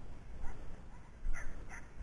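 Braque du Bourbonnais puppy giving three short, high-pitched barks over a low rumble.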